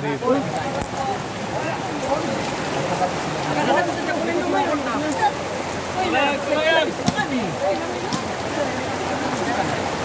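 Steady rain falling, with people talking and calling out over it. A single sharp knock about seven seconds in.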